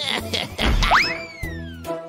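Cartoon sound effect of a bazooka firing a sweet potato: a low thump, then a whistle that shoots up in pitch and slowly falls away as the shot flies. Background music with a bass line plays throughout.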